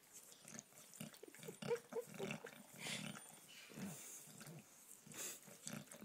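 English bulldog licking a person's neck and ear: soft, irregular wet licking sounds.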